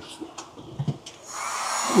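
Handheld electric heat gun switched on about a second in, its fan and air stream building up to a steady rush. It is running as a test load, drawing power from a newly wired off-grid inverter and battery bank that now delivers power.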